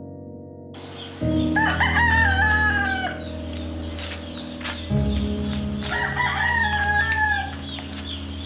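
A rooster crowing twice, each crow about a second and a half long, the second about four seconds after the first, over background music with slow chord changes.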